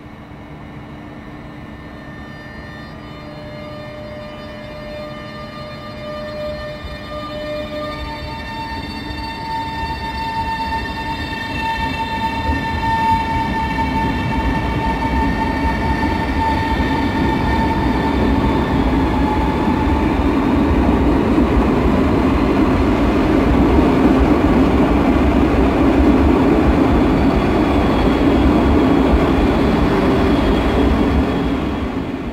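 Alstom ED250 Pendolino electric multiple unit pulling away from a platform. Its traction motors whine in several steady tones, which shift in pitch about eight seconds in, while the rumble of the wheels grows steadily louder as the train gathers speed past.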